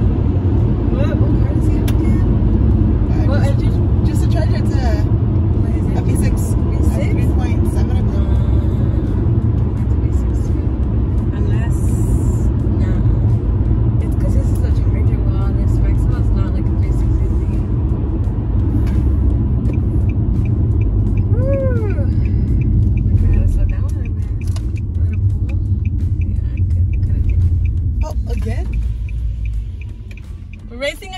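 Steady heavy rumble of a V6 car's engine and road noise inside the cabin during a hard highway run, fading off over the last few seconds as the car eases off.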